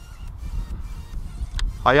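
Wind buffeting the microphone in strong, gusty conditions (about 30–40 km/h), heard as a low rumble, with one short click about one and a half seconds in. A man's voice starts just before the end.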